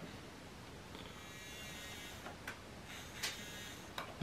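Faint buzz of a small DC hobby motor running briefly, starting about a second in and stopping before the end, with a few light knocks from the cup being handled.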